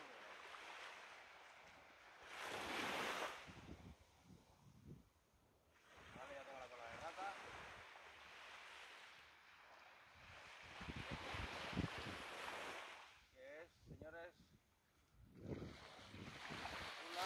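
Surf washing onto a beach, swelling and fading in several surges every few seconds, the loudest a few seconds in. Faint, brief voices come through twice.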